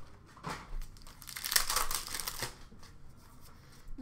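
Wrapper of a 2020-21 Upper Deck SP Authentic hockey card pack being torn open and crinkled by hand. There is a short rustle about half a second in, then a longer, louder crinkling in the middle, then quieter handling.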